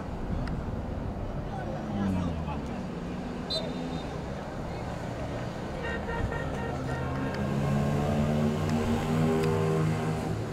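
Players and spectators at a football match calling out, over outdoor background noise. In the second half, several long drawn-out calls hold steady in pitch and grow louder towards the end.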